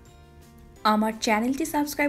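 Soft background music with faint held notes, then a woman's voice comes in loudly a little under a second in.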